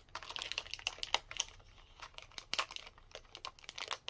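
Clear plastic packaging of a metal cutting-die set crinkling and crackling in irregular bursts as it is handled and the dies are pulled out of the sleeve.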